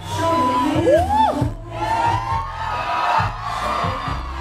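Recorded backing music playing loud with the audience cheering and whooping; a whoop rises and falls about a second in.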